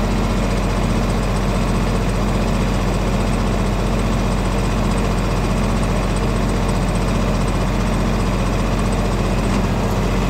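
An RK compact tractor's diesel engine running steadily at idle, a low, even hum with no change in speed.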